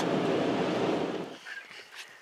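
Vehicle driving on a gravel road: a steady rush of tyre and road noise that fades away over the second half.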